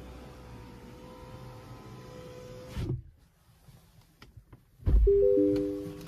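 Sounds inside a car cabin: a soft thump about three seconds in, after which it goes nearly quiet. Near the end comes a louder deep thump, followed by a short electronic chime of three steady tones that fades out.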